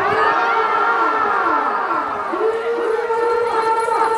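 Crowd of spectators yelling and whooping together as a bull is run through them. Many long cries overlap, falling in pitch at first, then one held high cry from about halfway through.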